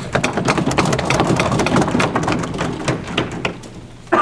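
Audience applauding: a dense run of claps that thins out and fades near the end.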